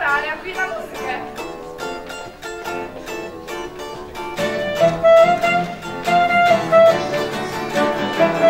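Live acoustic guitars strummed in a steady rhythm. About halfway through, a louder held melody line comes in over them.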